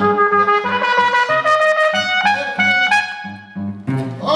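Trumpet playing a held, stepping melody line over a plucked cello bass line repeating in an even rhythm; the trumpet briefly drops out near the end.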